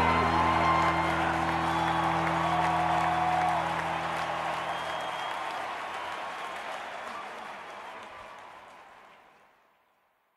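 The song's last held chord ringing out under crowd cheering and applause. The chord dies away about halfway through and the crowd noise fades out to nothing near the end.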